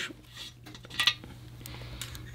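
A light metallic click about a second in, with a few fainter ticks, as steel roller lifters are handled and seated in the link bar (dog bone) that ties two lifters together to keep them from spinning.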